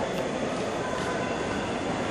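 Steady, even background noise of a large indoor arena, with no distinct events.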